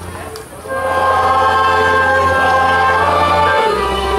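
Polish folk song sung by a group of voices over instrumental accompaniment, accompanying a folk dance. The music thins briefly just after the start, then the full chorus comes in and holds.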